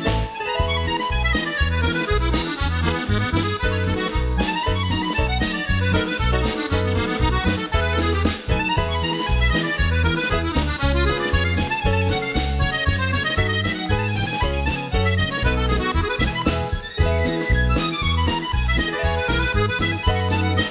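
Hohner chromatic button accordion playing a lively polka: a fast melody over a steady oom-pah bass pulse.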